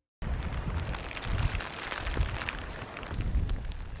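Heavy rain falling, with strong wind gusting on the microphone: an uneven low rumble under a hiss of spattering raindrops, cutting in just after the start.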